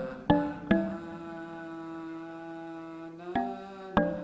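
A male vocal line played back together with a marimba-like mallet part that Reason's Bounce Audio to MIDI made from it, unedited and rough. It opens with a few struck notes, then one note held for about two and a half seconds, then two more struck notes near the end.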